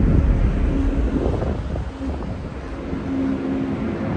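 Wind buffeting the microphone over a low outdoor rumble, dipping somewhat in level around the middle.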